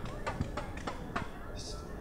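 A few light, irregular knocks and clicks over faint outdoor background noise, with a brief hiss near the end.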